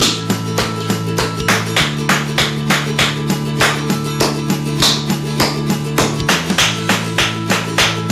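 Tap shoes' metal taps striking a wooden floor in a steady, even rhythm of shuffles and steps, about three sharp taps a second, over background music.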